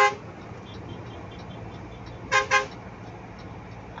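Truck horn: the end of one toot at the start, then two quick short toots about two and a half seconds in, over the steady low hum of the engine heard from inside the cab.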